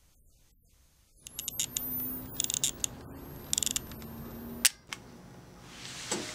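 A camera going off, starting about a second in: a high rising whine like a flash charging, sharp clicks, two short bursts of rapid clicking, and a last sharp shutter click near the end, over a low steady hum.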